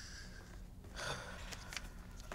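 A man breathing out hard through the nose, a breathy exhale at the start and another about a second in, with a few light clicks near the end.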